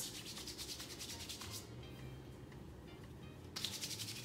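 Palms rubbing quickly together to spread hair oil, a fast run of dry rubbing strokes for about a second and a half, then another short burst of rubbing near the end.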